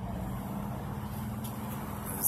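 Steady low mechanical hum, with no distinct event.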